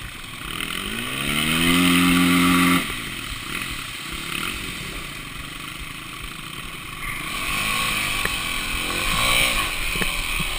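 Dirt bike engine revving up and held briefly, then dropping off sharply as the throttle closes; later a few short rising-and-falling blips of the throttle as the bike moves into a creek crossing, with water rushing and splashing underneath.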